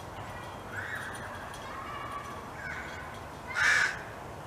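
Crows cawing: several calls, the loudest a short harsh caw near the end.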